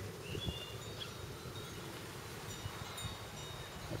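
Faint, steady outdoor background noise, with a brief high chirp about a third of a second in and a fainter high note later on.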